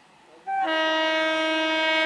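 Horn of an approaching EMU local train sounding one long, loud blast. It begins about half a second in with a brief higher note, then settles on a steady lower note.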